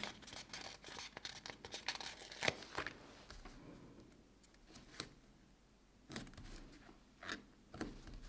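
Faint, scattered rustles and small clicks of fingers handling a paper planner sticker, peeling it up and pressing it down onto the planner page. The clicks bunch in the first few seconds, then come singly with quiet between.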